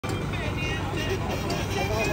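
Several people talking in the background, not clearly, over a steady low rumble.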